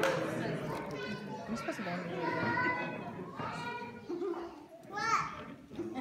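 A group of kazoos buzzing together in a loose, uneven chorus, with a rising pitch glide about five seconds in. Voices from the audience come through underneath.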